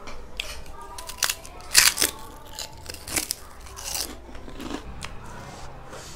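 Close-miked eating sounds: a person biting into and chewing fried potato, with several short wet clicks and crunches, the loudest about two seconds in.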